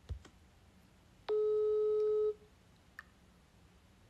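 Telephone ringback tone from an outgoing call: a single steady one-second beep, the ringing signal while the called phone rings, heard over the phone's speaker. A small click follows about a second later.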